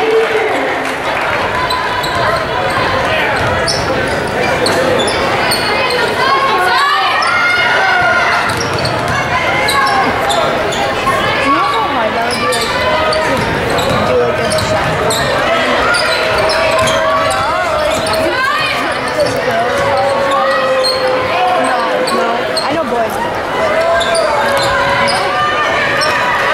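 A basketball game in play in a large school gym: the ball bouncing on the hardwood court amid voices calling out, all ringing in the hall's echo.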